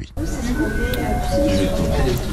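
An electronic chime: a few clear steady tones stepping down in pitch, a high note followed by two lower ones, over a noisy background.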